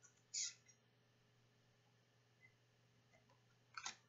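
Playing-size cards being handled: a short, papery swish of a card about half a second in and a light tap as a card is set down on the wooden table near the end. Between them, near silence with a faint low hum.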